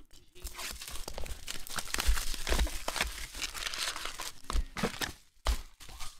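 A sealed trading-card retail box torn open, with a continuous crackle of tearing cardboard and wrapper and crinkling foil packs. Near the end it breaks into a few separate knocks as the packs are handled on the table.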